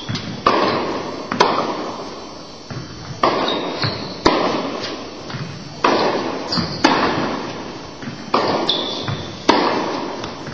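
Tennis balls being struck by rackets and bouncing on an indoor court, about eight sharp impacts coming in pairs roughly a second apart, each echoing through the hall. A few short high squeaks are heard between them.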